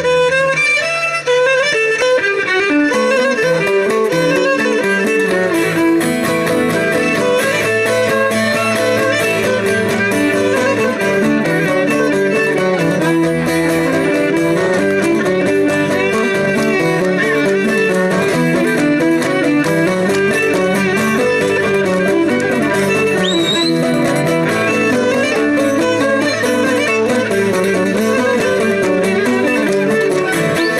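Cretan lyra bowing a continuous melody over plucked laouto accompaniment, played live as one unbroken, steady-volume stretch of music.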